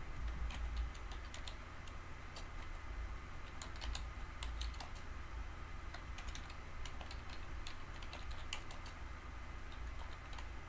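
Typing on a computer keyboard: short, irregularly spaced key clicks over a low steady hum.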